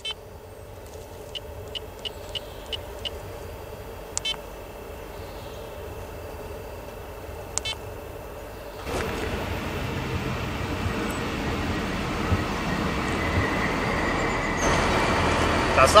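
A handheld Garmin GPS gives short high key beeps as its touchscreen menus are tapped through, about eight over the first eight seconds. Then a steady outdoor rumble of vehicle and train noise beside a railway line sets in and slowly grows louder.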